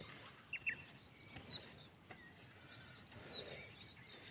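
Wild birds calling: a pair of quick chirps about half a second in, then a short downward-sliding whistle that comes twice, about a second in and again just past three seconds, over faint outdoor background noise.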